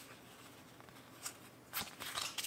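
Faint handling of a fanned hand of Pokémon trading cards, the cards sliding against each other, with two brief card flicks in the second half.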